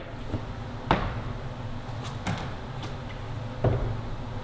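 Quiet indoor room tone broken by a few sharp knocks, the clearest about a second in, then soft dull thuds near the end as a climber pulls onto the holds of a bouldering wall.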